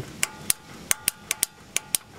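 Fuel shutoff (anti-afterfire) solenoid on the bottom of a Walbro carburetor on a Kohler Command 15.5 engine, clicking as the ignition key is switched on: a quick series of sharp clicks, about eight in two seconds. The solenoid is working at this moment, though its fault is that it sometimes stops clicking and cuts the engine out.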